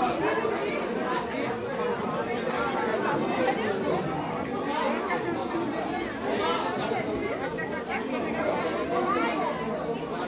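Crowd chatter: many people talking at once in overlapping, indistinct voices.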